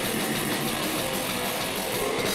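Band playing live: electric guitar over a drum kit played hard, a dense, steady mass of sound with no break.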